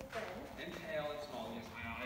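An actor's voice on stage speaking a line, with some drawn-out vowels.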